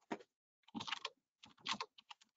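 Typing on a computer keyboard: three quick runs of keystrokes with short pauses between them.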